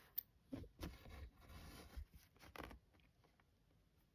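Faint scratchy rustling of fingers and embroidery floss against Aida cross-stitch fabric, a few soft scrapes in the first two seconds or so, then near silence.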